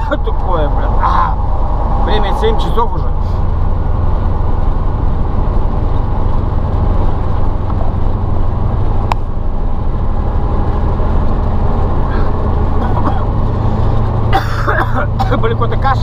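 Ural logging truck's YaMZ-238 V8 diesel running steadily under way, heard from inside the cab, its note rising slightly near the end.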